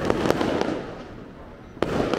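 Fireworks going off: a sharp bang at the start, a spell of dense crackling that fades away, then another sharp bang near the end.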